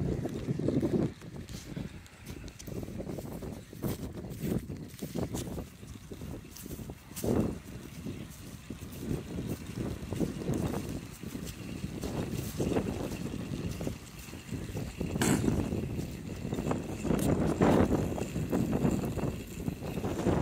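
Gusty wind buffeting the microphone, surging and easing unevenly, with a few brief knocks.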